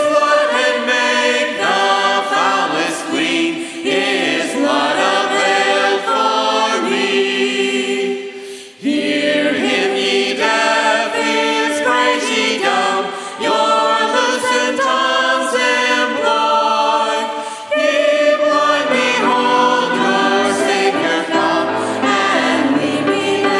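Congregation and a small group of amplified lead singers singing a hymn together, largely unaccompanied. A piano joins in near the end.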